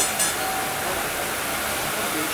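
Steady rushing background noise of a street-food market, with two light clinks right at the start and a faint steady hum in the first second.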